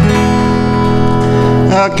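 Acoustic guitar: one chord strummed and left ringing for most of two seconds, dying away just before the player starts talking.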